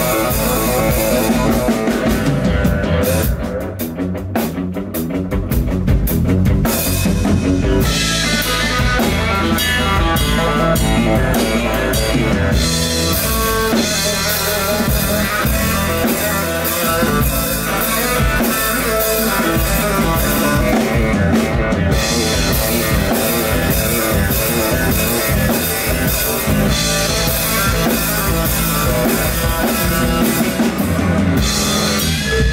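Live blues-rock instrumental from an electric guitar, electric bass and drum kit, with the guitar taking the lead. About three seconds in the drums drop out for a few seconds, leaving guitar and bass, before the full band comes back in.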